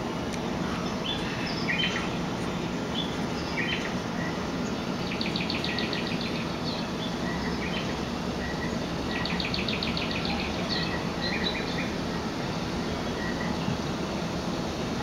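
Small birds chirping, with two rapid trills about five and nine seconds in, over a steady background noise.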